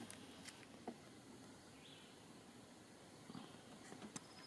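Near silence: faint outdoor room tone with a light click about a second in.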